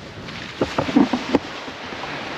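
Wind and surf noise with a quick cluster of knocks and rubs about half a second to a second and a half in, from the camera being handled and set down.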